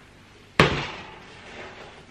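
A single sharp knock of kitchenware being set down or struck about half a second in, ringing briefly and fading over about a second.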